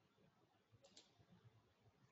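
Near silence, broken by two faint quick clicks a little under a second in: a computer mouse clicking to advance a presentation slide.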